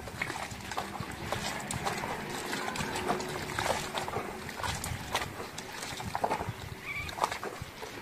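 Hands squeezing and swishing a sponge in a metal basin of frothy water, working up foam, with irregular small splashes and squelches.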